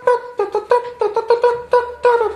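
Music: a quick run of short, sharply plucked high notes on a string instrument, about six or seven a second.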